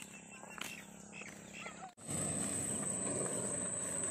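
Outdoor rural ambience: for the first two seconds it is quiet, with a few short, faint chirps. Then it switches abruptly to a louder, steady background, with a continuous high-pitched insect drone over it.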